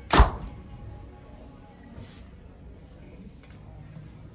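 A Mathews Phase 4 compound bow (65-pound draw) shot once: a single sharp thump about a quarter second in as the string is released and a 460-grain Gold Tip arrow leaves the bow, clocked at 282 feet per second. A faint click follows about two seconds later.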